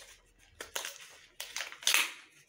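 Plastic packaging of a pair of children's scissors crackling and crinkling as it is pulled open by hand, in several short bursts, the loudest near the end.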